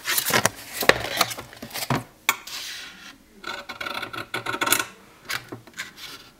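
Paper-covered cardboard album cover being handled on a cutting mat: several sharp taps and paper rustling, then a rasping rub for about a second and a half in the second half.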